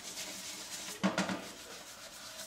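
Plastic dish brush scrubbing a frying pan in a stainless steel sink, with a short clatter about a second in.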